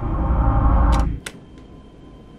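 Horror film score drone swelling, then cutting off abruptly about a second in on two sharp clicks, leaving a faint steady hum.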